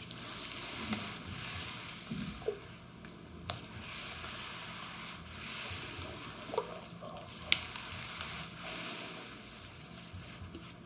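Massage strokes rubbing over skin, in repeated sweeping swells of soft hiss about a second long each, with two sharp clicks.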